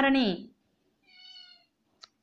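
A high-pitched voice finishes saying a word in sing-song intonation during the first half second. About a second in, a faint, short, steady tone with a few overtones sounds for about half a second.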